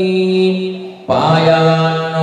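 A priest chanting Sanskrit mantras on long, steady held notes; the voice trails off about a second in for a short breath and then resumes.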